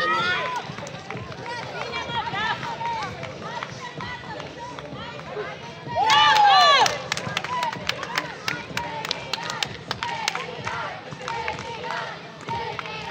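Game sounds of a 3x3 basketball match on an outdoor court: short squeaks and players' calls throughout, a loud cry about six seconds in, then a quick run of sharp taps from the ball and feet on the plastic tile court.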